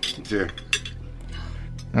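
Cutlery clinking lightly against plates during a meal, a few scattered clinks.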